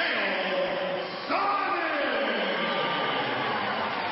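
Ring announcer's voice over an arena public-address system, drawn out and echoing as he calls out the fight result. A long falling call starts just over a second in.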